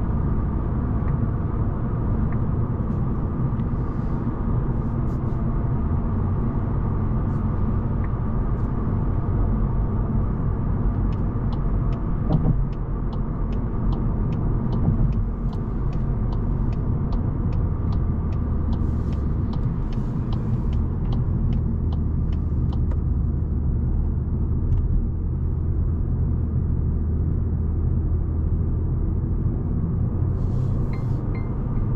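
Cabin sound of a Volkswagen Golf with a 1.5 TSI four-cylinder petrol engine cruising: a steady engine hum under tyre and road rumble. In the middle, a run of quick, even clicks lasts about twelve seconds.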